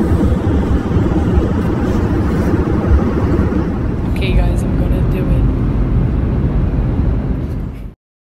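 Jet airliner cabin noise in flight, a loud, steady low rumble of engines and airflow, with indistinct voices mixed in.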